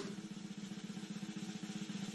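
A steady, rapid snare-drum roll at a moderate-low level: the game show's suspense roll building toward the bonus round.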